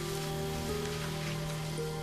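Soft background music score: a low held note under sustained higher notes that shift slowly, over a light hiss.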